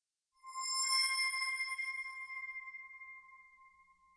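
A single bell-like ping, struck about half a second in, that rings and fades away over about three seconds.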